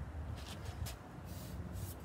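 Low, steady background rumble with a few faint, brief rubbing noises from a hand moving over the truck's door.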